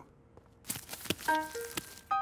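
Soft squishing of dough being kneaded by hand, a few strokes a little under a second in, then gentle held music notes from just after a second.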